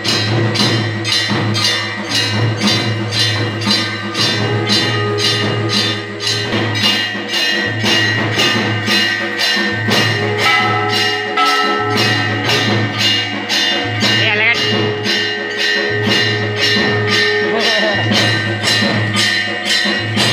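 Hindu temple aarti music: bells and percussion struck in a steady beat of about two strokes a second, over a continuous ringing bell tone and held, sustained notes.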